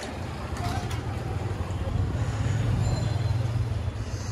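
A motorcycle engine running with a steady low hum that grows a little louder past the middle, over street traffic noise.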